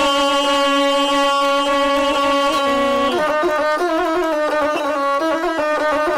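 Gusle, the single-string bowed folk fiddle, with the guslar's voice: one long held note for about the first three seconds, then a quick run of ornamented, changing notes.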